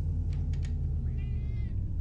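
A single short, high mewing call like a cat's meow, rising and falling, about a second in. Before it come a few light clicks of glass jars being handled on a pantry shelf, over a low steady hum.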